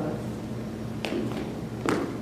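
Two short knocks about a second apart on a hard surface, the second louder, over a steady low room hum.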